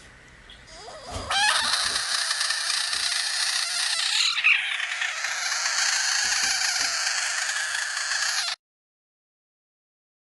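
A frog giving a long, loud, harsh defensive scream after being poked on the head, its mouth held wide open; the scream starts about a second in and cuts off suddenly about a second and a half before the end.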